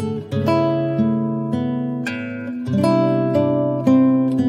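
Background music on acoustic guitar: plucked chords that change about once a second and ring out between changes.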